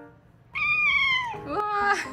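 An adult cat's sharp, high-pitched angry scream, starting about half a second in and lasting under a second, dipping in pitch at its end: the older cat lashing out at a kitten that has been pestering it.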